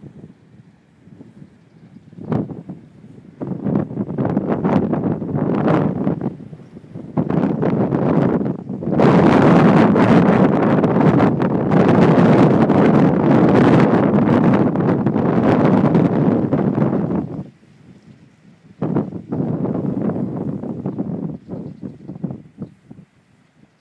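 Wind buffeting the microphone in gusts: a few short surges, then a long strong gust of about eight seconds, a lull, and another gust near the end.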